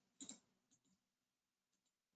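Near silence broken by a faint double click about a quarter second in, then a few much fainter ticks: computer mouse clicks.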